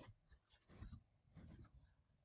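Near silence with a few faint, soft computer keyboard key presses.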